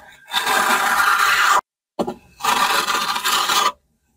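A hand trowel scraping as it spreads wet stucco across a concrete-block wall: two long strokes, each over a second, each stopping sharply.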